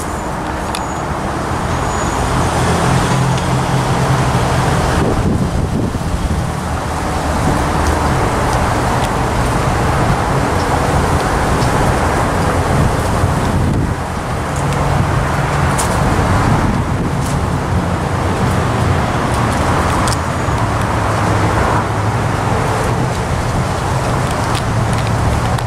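Road traffic running continuously, with vehicle engines humming low as cars go by; the noise eases off briefly a few times and builds again as more vehicles pass.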